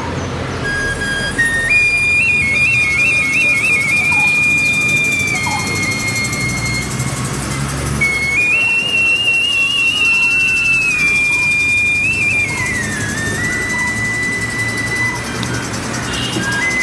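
A cadet band of drums and a shrill pipe playing. One high pipe carries an ornamented melody over the drums, with quick trills early on and longer held notes later, the tune dipping about 13 seconds in.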